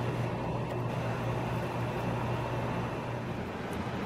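A steady low hum with an even hiss over it, unchanging throughout, like a fan or other small machine running.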